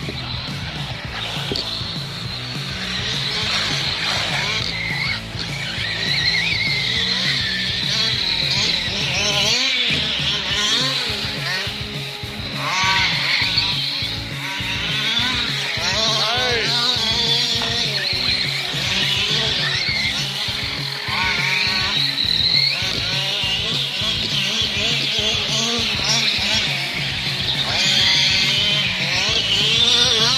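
Electric RC trucks' motors whining and revving up and down as they race over dirt, over background music with a steady beat.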